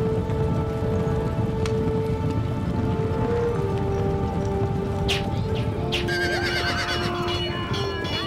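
Massed cavalry horses galloping, a dense rumble of hooves, under a film score of long held notes. A few sharp cracks come about five seconds in, and from about six seconds in horses whinny over the charge.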